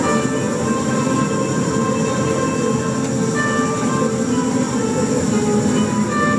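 A tuna, a student minstrel ensemble, playing guitars and other string instruments together in a dense, steady texture of held notes.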